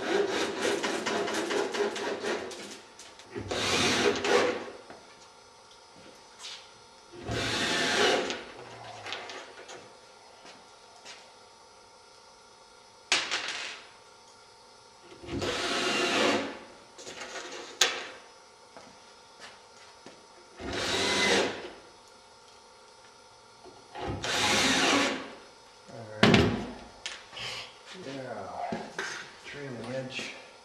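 Cordless drill driving wood screws through batten strips to fasten a thin plywood skin onto a wing frame, in short bursts of about a second each, seven or so times, with wood handling noise between.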